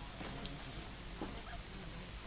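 Quiet outdoor background with a few faint, brief sounds from somewhere off in the distance.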